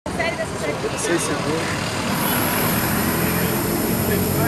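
Street traffic noise with vehicle engines running and voices in the background; a thin high whine comes in about two seconds in.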